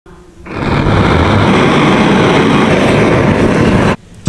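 A loud, steady rushing noise that starts about half a second in and cuts off abruptly just before the end.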